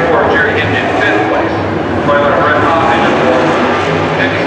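IMCA sport modified race car engines running at low speed around a dirt track, with a voice talking over them.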